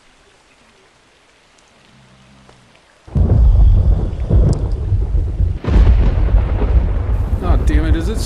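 Thunderstorm: faint hiss at first, then about three seconds in a loud rumble of thunder breaks in over heavy rain and keeps going, with a brief dip about halfway.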